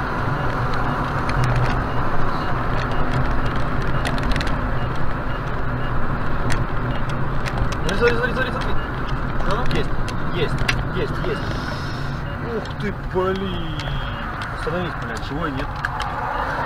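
Steady engine and tyre noise heard from inside a moving car's cabin, with faint voices in the cabin from about eight seconds in.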